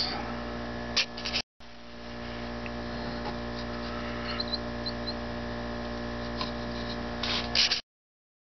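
Steady electrical mains hum made of several even tones, broken by a short gap about one and a half seconds in. There are a few light handling knocks just before the gap and again near the end, and then the sound cuts off suddenly.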